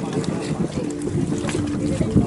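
A small boat's motor running steadily nearby, with wind on the microphone.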